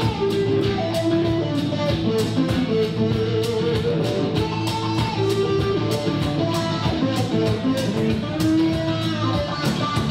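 Live band playing an instrumental break in a country cover song: electric guitar carrying a melody over strummed guitar and a steady beat.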